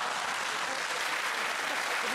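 Studio audience applauding and laughing.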